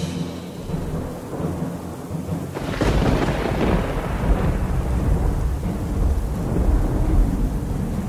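Thunderstorm sound effect: rain with a low rumble, then a sudden crack of thunder about two and a half seconds in that rolls on as a heavy, lasting rumble.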